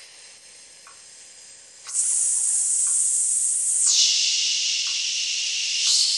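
A woman's forced 'engaged exhale' breath-work sequence: a soft blow of breath for about two seconds, then a loud high hiss through the teeth for two seconds, then a lower 'shh' for the last two seconds, draining the air from the lungs. A metronome ticks faintly about once a second underneath.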